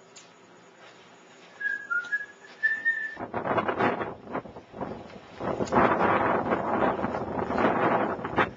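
A few short whistled notes, the last one gliding upward. About three seconds in, loud gusty wind noise on the microphone takes over and runs on, with bumps from handling.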